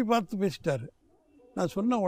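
Speech only: a man talking, with a short pause about a second in.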